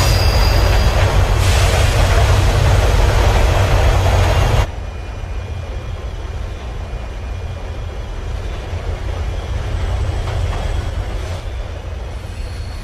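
Subway train passing at speed: a loud rumble and rush that cuts off suddenly after about four and a half seconds. It gives way to the quieter, steady rumble of riding inside a train car.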